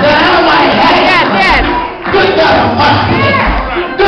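A church congregation shouting and calling out over one another in worship, loud and unbroken, with shouts rising and falling in pitch, over church music.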